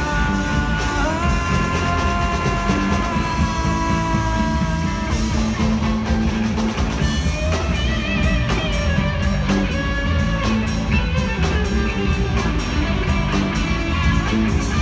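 Live rock band playing an instrumental passage on electric guitars, bass guitar and drum kit. Over the band a lead line holds long high notes that bend up in pitch for the first few seconds, then turns to shorter wavering, sliding notes.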